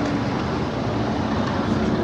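Steady low rumble of a train approaching in the distance, the 140 C 38 steam locomotive hauling its special, with a faint tone falling slowly in pitch.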